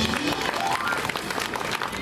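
Audience applauding: dense, steady clapping from a crowd, greeting the soloists just introduced.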